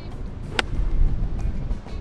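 One sharp click of a pitching wedge striking a golf ball, about half a second in, over background music.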